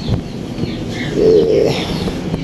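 A bird's low coo, lasting about half a second, comes a little over a second in. Small birds chirp faintly throughout.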